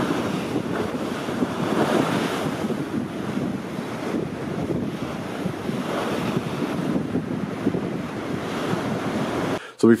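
Rough sea waves surging and washing, with wind blowing: a steady rushing noise that cuts off near the end.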